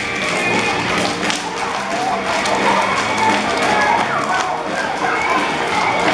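Children's exercise song playing over a speaker, with many quick taps and thuds from a group of young children's feet stepping and stamping on a tiled floor as they dance, and children's voices mixed in.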